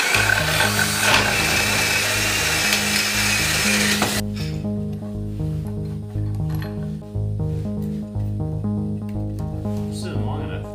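Power drill boring a hole through a two-by-four for a carriage bolt. It runs for about four seconds and then cuts off suddenly. Background music with a steady, repeating bass line plays throughout.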